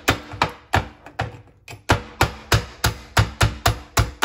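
Metal meat tenderizer mallet hitting Dungeness crab pieces on a wooden cutting board, cracking the shell. A dozen or more sharp knocks: a few spaced-out blows, a short pause, then a quicker steady run of about five a second.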